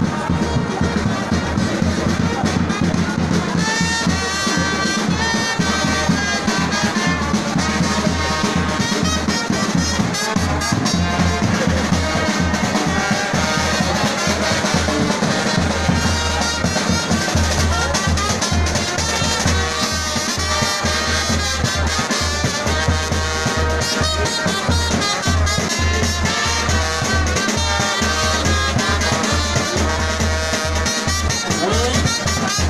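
A live brass fanfare band playing: trumpets and other brass carry the tune over bass drums beating a steady rhythm.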